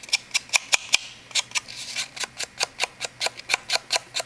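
Sponge dauber dabbed in quick repeated strokes to ink the edges of cardstock: a fast run of light taps, about five a second, with a short pause about a second in.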